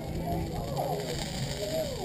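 Quiet background chatter of people talking, with no close voice and no distinct other sound.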